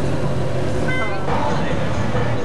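Cars moving slowly through a city intersection with their engines running, a steady low rumble with people's voices in it. A brief high-pitched tone sounds about a second in.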